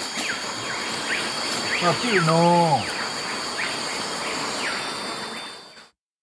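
Rainforest ambience from field footage: a steady high insect drone with short falling chirps repeating about twice a second. A man's voice speaks one brief falling phrase about two seconds in, and the sound fades out near the end.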